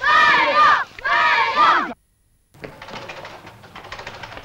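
Children shouting and yelling, several high voices at once during a scuffle, cut off abruptly just under two seconds in. After a brief silence there is only faint, indistinct background noise.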